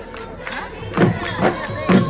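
Live Bihu dance music with crowd noise and voices. Strong drum strokes, the dhol that drives Bihu dance, come in about a second in.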